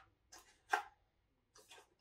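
Small cardboard model-kit box handled in the hands: a few brief rustles and taps, the sharpest just under a second in.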